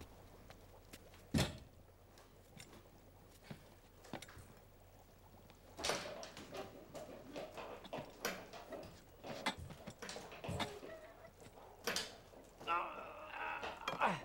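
Knocks, clicks and clatter of a man climbing a stool and hooking gravity boots over an overhead bar. There is one sharp knock about a second and a half in, and a busier run of knocks and rattles from about six seconds on.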